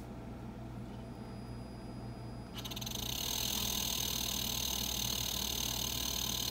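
Embraco VEGT variable-speed refrigerator compressor, driven by its VCC3 inverter on plain 120 V through a home-made start circuit, starting up about two and a half seconds in. It spins up over about a second and then runs steadily with a high-pitched whine over a low hum, which shows that the circuit makes the inverter start the compressor.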